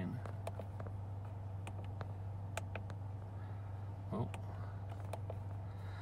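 A steady low hum with a few faint, scattered clicks, and a man's brief "oh" about four seconds in.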